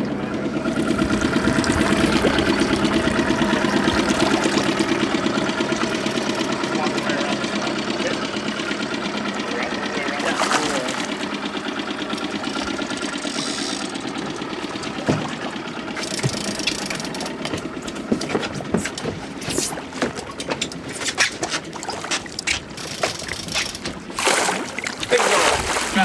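Boat outboard motor running steadily at low speed. In the second half, irregular splashes and knocks come as a hooked chinook salmon thrashes at the surface beside the boat and is brought to the landing net.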